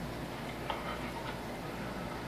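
Quiet, steady background hiss of a film soundtrack between lines of dialogue, heard through a TV's speaker. There is a faint brief sound at about two-thirds of a second.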